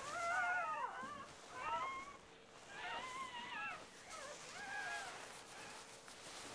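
Four-week-old red fox cubs whimpering: a run of four short, high, wavering whines, each under a second, growing fainter.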